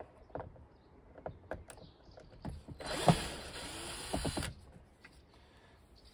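Cordless drill backing a screw out of a robot mower's plastic chassis. The motor runs in one burst of about a second and a half near the middle, with light clicks of handling before and after.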